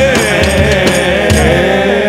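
Male voices singing an Urdu naat, drawing out one long, wavering note over a few low drum beats.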